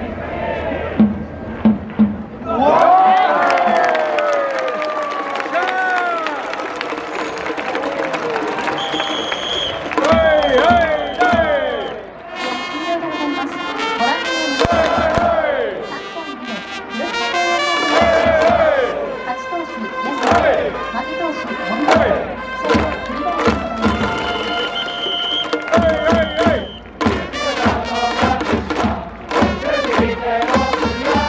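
Stadium crowd cheering and shouting, with a few sharp claps in the first two seconds. From about twelve seconds in, brass music with a regular beat, trumpet-like, plays over the cheering crowd.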